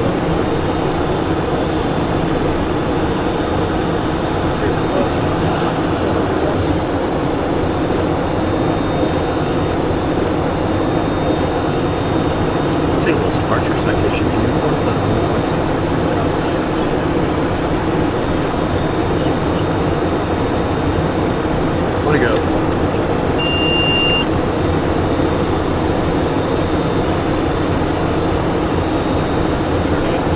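Steady cockpit noise of a Cessna Citation Encore business jet in flight on approach: rushing air and engine drone with a faint high whine running through it. A single short high beep sounds about 23 seconds in.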